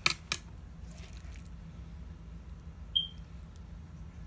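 Two sharp clicks in quick succession, then a single short high-pitched chirp about three seconds in, over a low steady hum.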